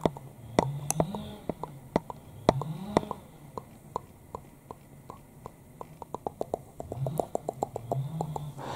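Soft, irregular tapping clicks of close-up ASMR poking at the microphone, a few a second and quickening near the end, with soft low hums of the voice now and then.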